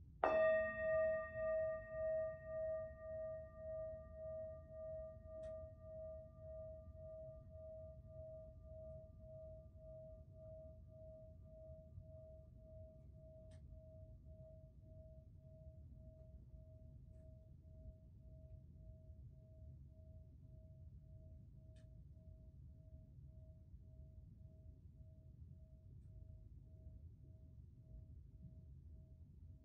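Metal singing bowl struck once with a mallet, then left to ring out. Its higher overtones die away within a few seconds, leaving a single long tone that fades slowly with a wavering pulse and can still be heard at the end.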